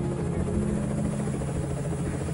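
UH-1 Huey helicopter running, a steady low drone with a fast beat from the rotor blades.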